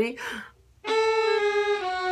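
Violin and viola bowing together on the D string: a sustained note starts just under a second in, then drops to a slightly lower note near the end.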